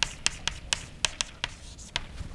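Chalk clicking against a blackboard as someone writes, about eight sharp taps at an uneven pace.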